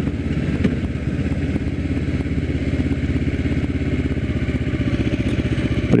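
Kawasaki Ninja 250R's parallel-twin engine with its stock exhaust, running steadily as the motorcycle is ridden along.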